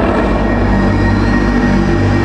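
Soundtrack of a presentation film: a steady low vehicle rumble with a few held musical tones over it, between lines of narration.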